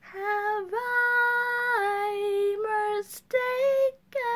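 A woman singing unaccompanied, holding long notes that step down and up in pitch, with a quick breath under a second in and a short break about three seconds in.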